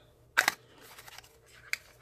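A small cardboard nail polish box being opened by hand: one sharp click about half a second in, then faint rustling handling and a smaller click near the end.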